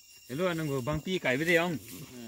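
A man speaking a few words.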